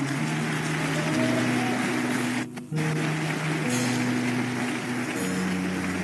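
Church keyboard music: sustained chords changing about every second, over a steady wash of congregation noise. The sound drops out briefly about two and a half seconds in.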